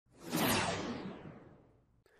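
A single whoosh sound effect that swells up quickly, then fades away over about a second, its high end dying off first.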